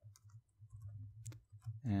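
A few faint computer keyboard keystrokes, scattered clicks as a short word is typed, over a steady low electrical hum.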